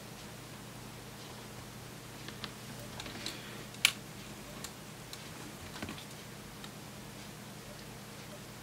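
A few faint, sharp clicks and small cracks of plastic as fingers pry and pick at the overmoulded plastic shell of a Lightning cable plug, the sharpest about four seconds in.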